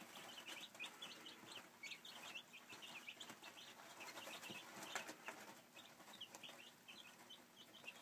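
A brood of week-old Silkie chicks peeping, many short high cheeps overlapping without pause, faint, with a few light ticks among them.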